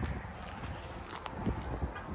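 Footsteps on concrete pavement, a few scattered steps over low background rumble.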